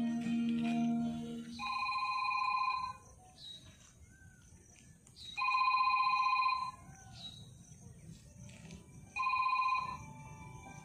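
Music ending about a second and a half in, then an electronic telephone ring sounding three times: steady, even-pitched rings a little over a second long, each followed by a pause of about two and a half seconds.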